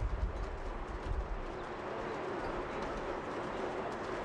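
A bird cooing over steady outdoor background noise, with a low rumble that fades away in the first second and a half.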